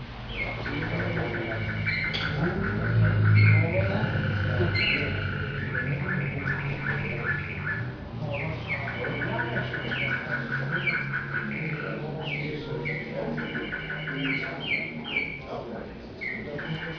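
Caged song canary singing: long rolling trills and repeated pulsed tours, one phrase after another, with brief pauses about eight and twelve seconds in. Over a low background murmur of voices.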